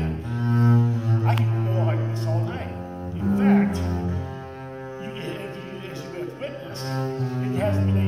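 Double bass played with the bow: a run of low sustained notes, each held for about a second or more. The playing thins out and grows quieter past the middle, then swells again near the end.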